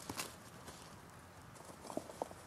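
Faint footfalls on grass from a running dog and handler, with a few soft ticks.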